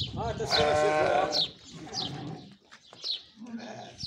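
Sardi sheep bleating: one long bleat about half a second in, then fainter calls.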